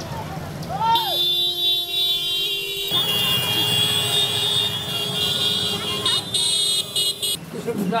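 Vehicle horn blaring in long steady blasts, starting about a second in and changing tone about three seconds in, over a low engine rumble from passing motorbikes.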